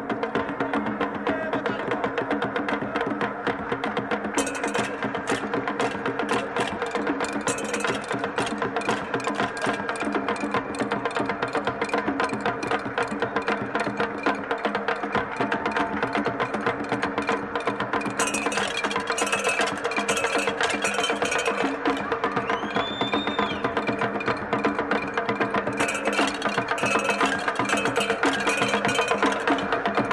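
Traditional Cameroonian percussion music: fast, dense clicking strokes over steady held low tones. A brief sliding whistle-like tone comes in a few seconds before the end.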